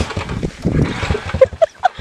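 Irregular knocks and rustling from a handheld camera being swung about, then a few short laughs near the end.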